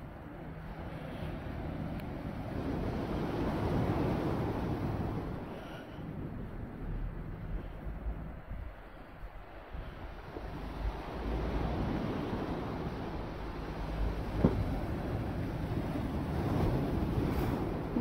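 Sea waves breaking and washing against the foot of a concrete sea wall, in swells that rise about four seconds in and again past the middle, with wind buffeting the microphone.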